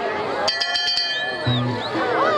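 Shouting voices over background music, with a rapid metallic clinking ring about half a second in that lasts about half a second.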